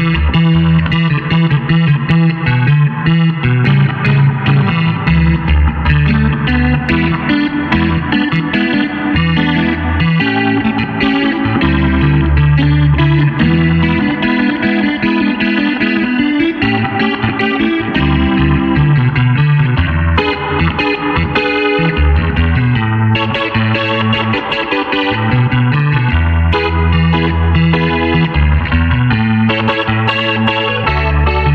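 Clavinet playing a funk jam: a low bass line in the left hand under short, repeated chord stabs.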